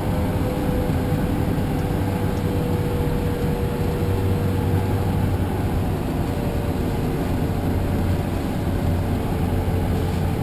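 Bombardier Challenger 605 in flight, heard inside the cockpit: a steady rush of airflow over a low hum from its two rear-mounted CF34 turbofans. A faint steady tone runs through it and sinks slightly in pitch.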